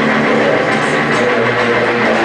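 Loud heavy metal music with distorted electric guitar, a dense, unbroken wall of sound.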